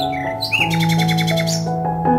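Background music with long held notes, over which a songbird gives a short rapid trill of evenly repeated high notes from about half a second in until shortly before the end.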